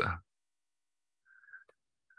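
The end of a spoken word, then near-total digital silence on a video-call line, broken by a faint, brief sound about a second and a half in that ends in a tiny click.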